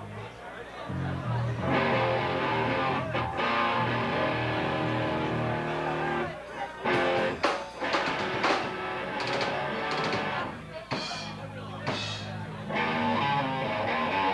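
Live electric guitar and bass playing on stage, a stepping bass line under chords, broken in the middle by a run of sharp drum hits.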